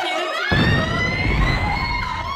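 Siren-like sound effect: a rising whine that climbs and then holds high, with a dense noisy burst underneath from about half a second in.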